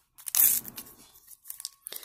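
Hands tearing at and crinkling a sealed Panini Adrenalyn XL trading-card packet that resists opening. There is one loud tearing rasp about a third of a second in, then quieter crinkling.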